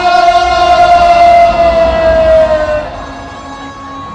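A single long held note, strongly pitched and rich in overtones, sliding slowly downward and cutting off about three seconds in, closing a devotional song. A quieter background follows.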